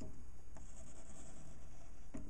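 Ink pen scratching across paper in drawing strokes, the longest lasting about a second in the middle, over a low steady hum.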